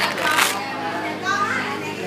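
Several people talking over one another, adults and children's voices mixed, with a brief noisy burst about half a second in.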